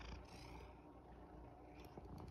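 Near silence with a faint, steady low rumble: a domestic cat purring close by.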